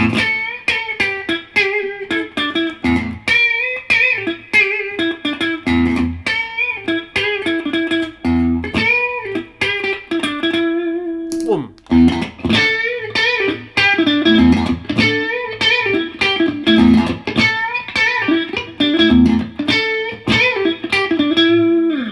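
Stratocaster-style electric guitar playing a picked single-note phrase with the tube preamp pedal switched off, giving the bypassed reference tone. There is a brief pause about halfway through, then the phrase continues.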